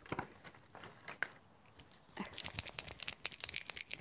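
Small clicks and rustles of art supplies being handled on a cluttered painting table, quieter for a moment just after the first second and then a quick run of small clicks in the second half.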